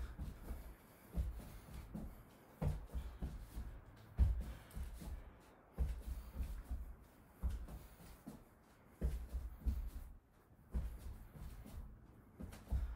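Feet doing side shuffles on a wooden floor: quick clusters of low thuds, one cluster roughly every one and a half seconds as he shuffles across the room and back.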